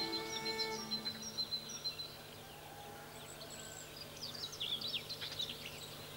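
Small birds chirping faintly, a thin high note held through the first two seconds and a busier run of short chirps later on. A violin melody fades out in the first second.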